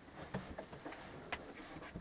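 Faint rustling with a few light clicks scattered through, the sound of a small dog and clothing being handled.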